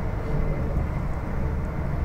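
Steady low rumble of a moving LNR Class 350 electric multiple-unit train, heard from inside the passenger cabin, with a faint steady hum above it.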